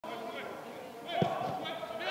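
A football kicked once with a dull thud about a second in, with players' voices calling across the pitch.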